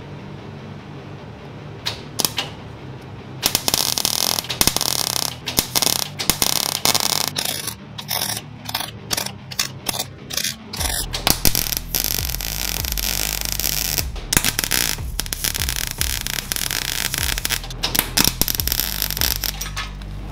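MIG welder arc crackling as a steel socket is welded onto a beer can. It starts a few seconds in with a long run, then a string of short stuttering bursts, then longer runs.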